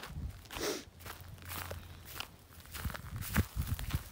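Footsteps on ground covered in dry hay mulch: a few irregular, soft steps with rustling.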